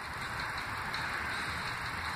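Steady background noise: an even hiss with a low hum beneath it, without distinct events.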